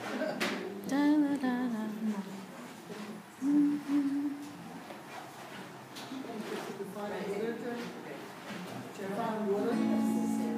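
Acoustic guitar being played, with short held pitched notes and a voice-like sound at times over it; the sound grows fuller near the end.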